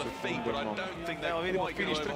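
Speech: a voice talking, with no words made out, most likely the race broadcast's commentary.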